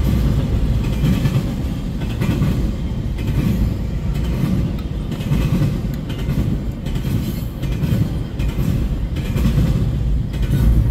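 Double-stack intermodal well cars of a freight train rolling past a grade crossing: a steady, loud low rumble of steel wheels on rail with faint irregular clicks.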